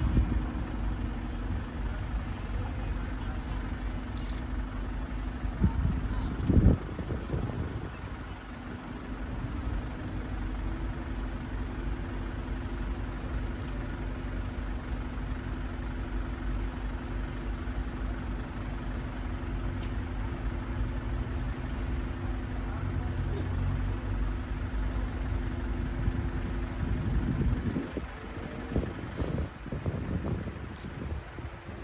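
Motor vehicle engine idling with a steady low hum, and a louder knock or two about six to seven seconds in.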